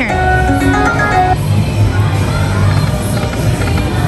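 Video slot machine's electronic spin sounds: a short run of stepped beeping notes in the first second and a half, then a steady low background hum.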